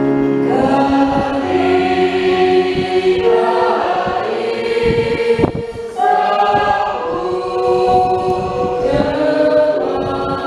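A group of voices singing a hymn together in sustained phrases, accompanied by an electronic keyboard, with a short break between phrases about five and a half seconds in.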